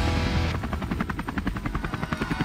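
Helicopter rotor chop, a fast, even beating that comes in clearly about half a second in, over background music.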